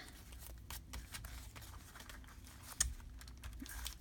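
Faint crinkling and rustling of gold foil paper as it is glued and pressed down onto a journal page by hand, with one sharper click a little before three seconds in.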